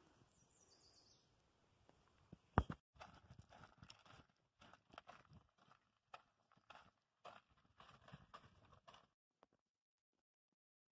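Faint footsteps on a gravel path, irregular, a couple of steps a second, after a single sharp knock about two and a half seconds in; they stop about a second before the end.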